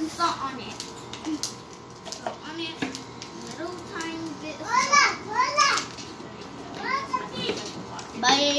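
Young girls' voices while they play, high-pitched and rising and falling, with a few light knocks in between.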